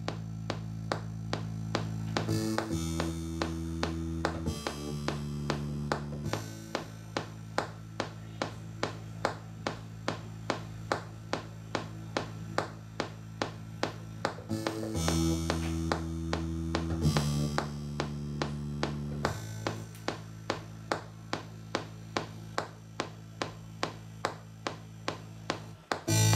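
Electronic beat being built in Ableton Live: a steady, sharp tapping percussion hit about twice a second over held low bass notes that shift pitch, the pattern looping about every twelve seconds.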